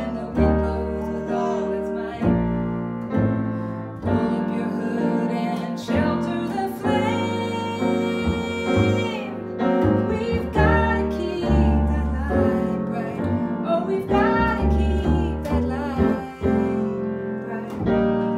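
Piano and double bass playing a slow song while a woman sings the melody, holding one long note about halfway through.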